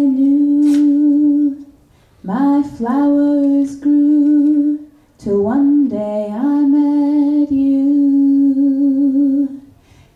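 A woman singing unaccompanied into a microphone, a slow, sad song drawn out in long held notes, with short breaks for breath about two and five seconds in.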